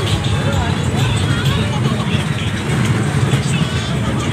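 Steady low rumble of a fairground ride in motion, with riders' voices and chatter over it.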